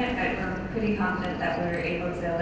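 Only speech: a woman talking steadily into a microphone, with a voice pitched around 200 Hz.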